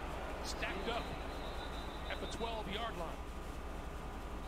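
Faint speech from a TV football broadcast over a steady low hum.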